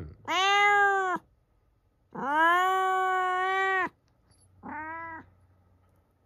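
Domestic cat meowing three times: a call about a second long, then a drawn-out one of nearly two seconds at a steady pitch, then a short, quieter one.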